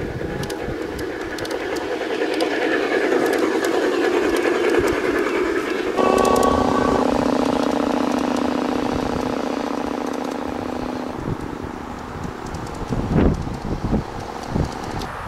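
A 1:25-scale garden-railway model railcar running on outdoor track, its electric motor and gearing giving a steady humming whine with light ticking from the wheels. The hum grows as the railcar draws near and, after a sudden jump about six seconds in, slowly fades as it runs away. A few knocks come near the end.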